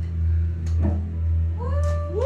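Guitar amplifier humming steadily on stage. About a second and a half in, a pitched tone with overtones slides up and holds.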